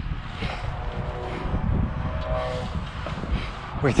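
Wind buffeting the microphone, with the rooftop tent's canvas rainfly rustling as it is spread and pulled over the tent.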